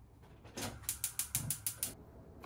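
Gas hob's spark igniter ticking rapidly, about eight sharp clicks at six or seven a second for just over a second, as the burner under the pot is lit.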